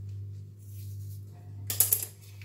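A knife set down on a marble countertop: a short clatter of sharp clicks near the end, over a steady low hum.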